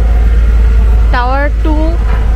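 A loud, steady low rumble, with a person's voice speaking briefly about halfway through.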